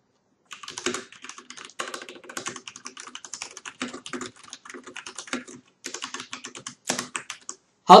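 Fast typing on a computer keyboard: irregular runs of key clicks with a couple of brief pauses.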